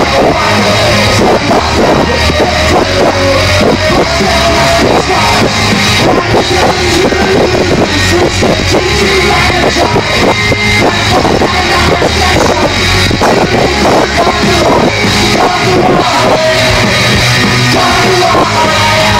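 Live rock band playing loudly, with electric guitars and drums in a continuous dense wall of sound.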